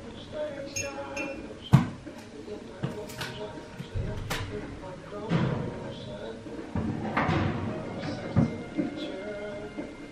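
Radio broadcast playing music and faint speech, broken by several sharp knocks and clatters, the loudest about two seconds in.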